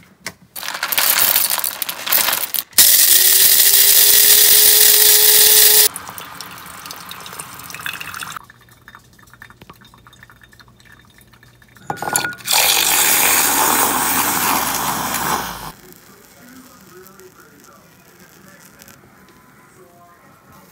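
Coffee-making sounds at a kitchen counter, with water and liquid being poured. An appliance runs loudly for about three seconds with a steady hum under a hiss. A second loud rush lasting about three seconds follows about halfway through.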